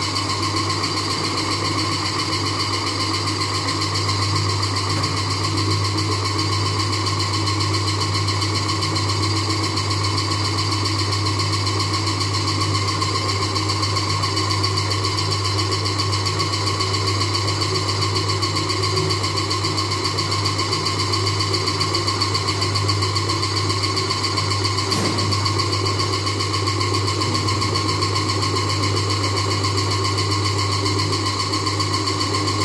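Belt-driven commercial wet grinder running steadily under its electric motor, grinding soaked black gram and rice into batter, with a constant hum and a steady whine.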